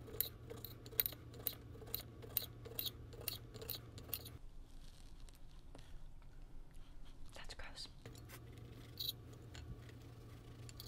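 Light, evenly spaced clicks, about two or three a second, over a low steady hum for the first four seconds or so; then only a few scattered clicks.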